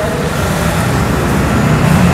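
Steady low mechanical rumble, growing a little louder near the end.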